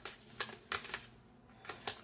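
A deck of reading cards being shuffled by hand: several short, sharp card clicks and snaps.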